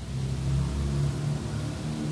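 Low, steady engine hum from a motor vehicle, swelling in the first half second and then holding.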